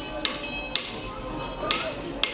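Blacksmith's hammer striking metal, three ringing blows: two about half a second apart early on, a third near the end.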